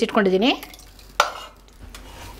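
A steel ladle stirring cooked dal in a pressure cooker, with one short metallic knock from the utensil about a second in.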